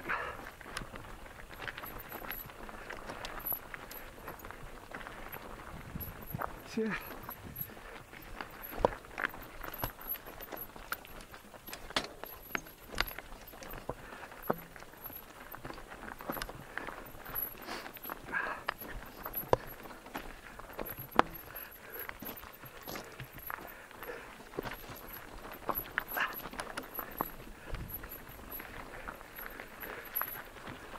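Mountain bike rolling down a rocky dirt singletrack: tyres crunching over gravel and loose stones, with frequent sharp knocks and rattles from the bike over the bumps.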